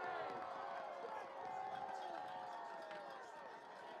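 Stadium crowd cheering and shouting, many voices overlapping, dying away over the few seconds after a first-down run.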